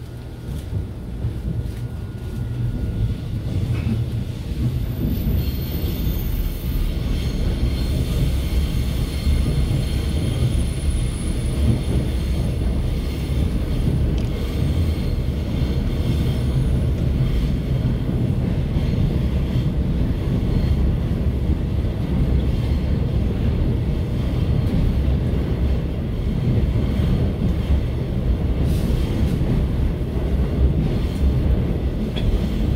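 Seoul Metro Line 3 subway car running through the tunnel, heard from inside the car: a steady low rumble of wheels on track. It grows louder over the first few seconds, and a faint high whine sits above it through the middle stretch.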